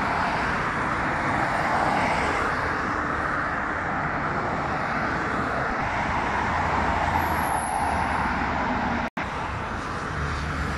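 Steady traffic noise of a busy multi-lane highway, heard from a moving vehicle: tyre and engine noise with no single event standing out. A faint high whine passes around seven to eight seconds in, and the sound cuts out for an instant about nine seconds in.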